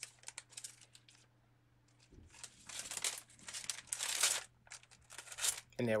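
Leafy plant stems rustling and crinkling as they are handled, in several uneven bursts.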